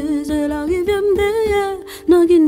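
A woman singing a gliding melody over music with a steady low beat; the song dips briefly just before the end.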